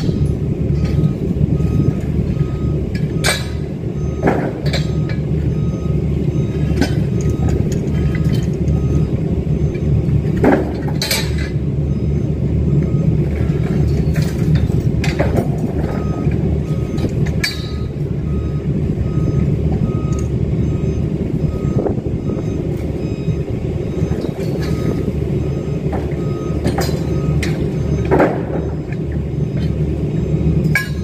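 A heavy diesel engine running with a steady low rumble while a vehicle's reversing alarm beeps in an even, rapid series that stops and starts. Now and then steel scaffold tubes and couplers clank sharply as the scaffold is taken down.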